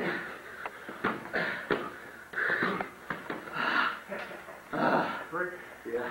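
Sparring in boxing gloves: a run of sharp, forceful exhaled breaths and grunts, with a few short slaps of gloves landing, and a brief voiced grunt near the end.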